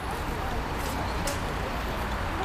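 Steady city street noise with traffic in it: an even background hiss over a low rumble, with no single loud event.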